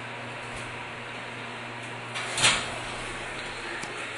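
Thyssenkrupp Signa4 elevator car doors sliding open, a brief rush of sound peaking about two and a half seconds in, over a steady low hum.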